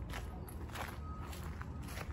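Footsteps of a person walking over grass and dirt, three steps in two seconds, over a low steady rumble.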